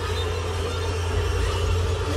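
Deep, steady rumble of an atomic explosion on a film soundtrack, with sustained droning tones held above it.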